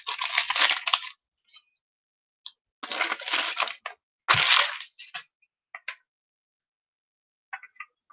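A trading-card pack's wrapper crinkling and tearing as a stubborn pack is worked open, in three bursts of about a second each, followed by a few faint light clicks.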